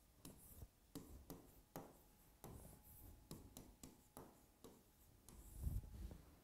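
Faint taps and scratches of a pen writing on an interactive touchscreen board, short irregular strokes about twice a second. A dull low thump comes near the end.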